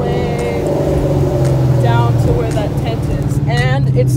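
Car engine and road noise heard from inside the cabin while driving: a steady low drone, with a few short bits of voice over it.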